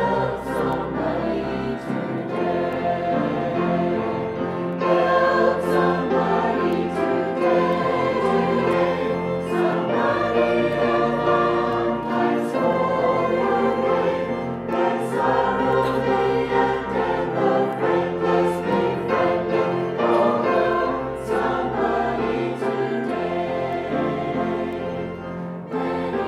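Mixed church choir singing a hymn in parts, men's and women's voices together, over deep held bass notes that change every couple of seconds.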